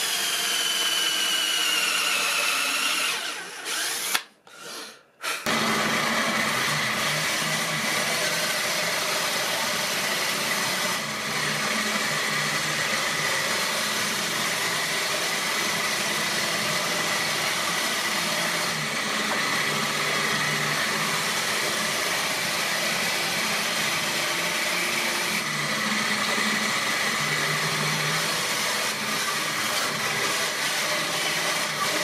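Ryobi 18V cordless drill drilling into a teak block, its whine falling in pitch over about three seconds. After a short break, a bandsaw runs steadily, cutting the teak block, with a constant high tone over a low hum.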